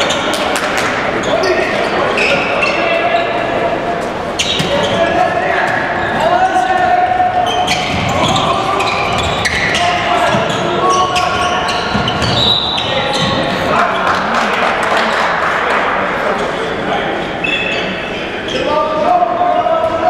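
Handball game play in an echoing sports hall: the ball bouncing and hitting the court again and again, with voices calling out over it.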